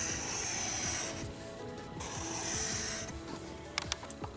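Graphite pencil scratching across paper in shading strokes, in two runs: one stopping about a second in, another from about two to three seconds in.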